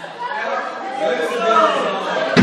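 Indistinct chatter of several people talking at once, with no music playing.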